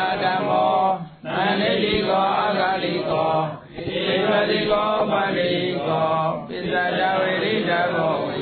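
An elderly Theravada Buddhist monk chanting Pali blessing verses in a steady, measured voice. The chant comes in long phrases of two to three seconds, with brief breaks about a second in, midway, and past six seconds.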